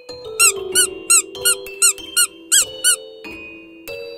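A run of eight quick, high squeaks, like a squeeze toy being pressed, about three a second, over soft background music.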